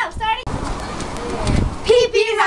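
A child's voice briefly, then about a second and a half of rushing noise on the microphone with a low rumble, before a child starts singing near the end.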